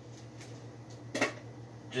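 A steady low hum in a small room, with a faint click early and one short, louder sound a little over a second in; a man's voice starts right at the end.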